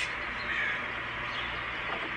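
Steady, low background noise from an outdoor video clip, with a faint brief sound about half a second in.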